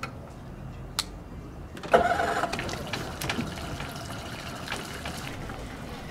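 Yamaha 10-horsepower outboard motor starting: a click about a second in, then the engine catches suddenly just before two seconds in and settles to a steady idle.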